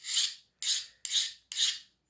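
A hand file drawn four times across the edge of a freshly quenched knife blade, quick scraping strokes about half a second apart: a file test of the blade's hardness after the quench.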